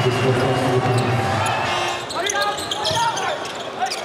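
A basketball bouncing on the hardwood court, several short sharp knocks, over steady arena crowd noise and voices.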